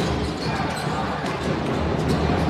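Sound of a basketball game in play in an indoor arena: the ball bouncing on the court over steady crowd noise.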